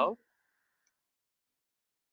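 Near silence: the gated audio of a webinar call goes dead just after the tail of a spoken word.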